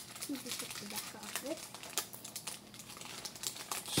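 Foil trading-card pack wrappers crinkling as a pack is torn open and the cards are handled, in a steady run of quick, light crackles.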